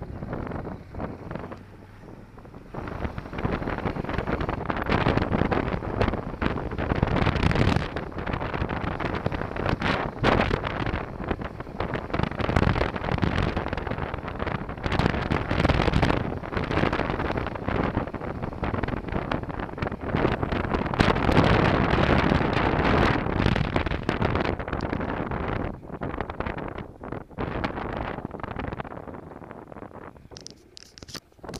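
Wind buffeting the microphone of a helmet camera on a moving motorcycle, a rough steady rush that swells about three seconds in as the bike picks up speed and eases off near the end as it slows.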